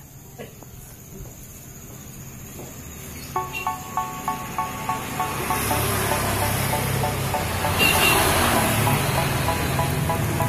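A motor vehicle going by close, its engine and road noise building from about halfway. Over it, short repeating beeps of a few pitches, about three a second, start about three seconds in.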